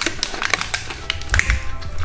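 Glass Christmas baubles clicking and tapping against each other and their plastic packing tray as they are handled, in quick irregular clicks, over background music.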